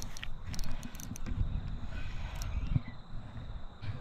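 Low, uneven rumble of handling noise with scattered faint clicks as a spinning reel is wound against a hooked fish.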